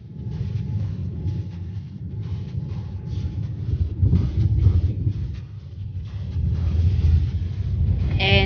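Inside an airliner's cabin as it rolls along the runway: a deep, steady rumble of the wheels and engines, with irregular knocks and rattles.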